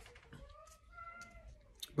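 A faint, drawn-out pitched call, animal-like, that rises and falls over about a second, followed by a couple of light clicks near the end.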